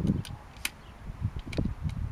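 A few sharp, scattered clicks over low wind and handling rumble from a homemade piston-hybrid spudgun whose stun-gun ignition is not firing; dust from the previous shot may have short-circuited the ignition.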